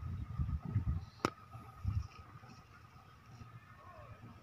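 Irregular low thumps of handling or wind noise on a handheld microphone for the first two seconds, with one sharp click about a second in. A faint steady high tone runs underneath.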